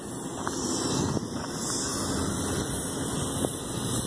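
Steady low background rumble of outdoor ambience, with a few faint clicks.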